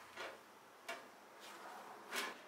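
A few faint clicks and rustles of gloved hands handling the graphics card's power cables and adapter dongle inside a PC case, with one sharp click about a second in.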